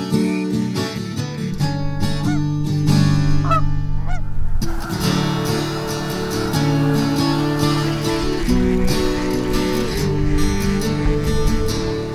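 A large flock of geese honking over acoustic guitar music. The calls swell into a dense, continuous chorus about five seconds in.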